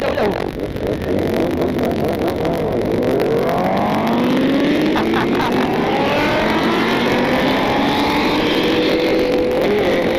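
Several motorcycle engines accelerating hard together, each climbing in pitch and dropping back at every gear change, the notes overlapping. Wind rushes over the microphone, and near the end one engine holds a steady high note at speed.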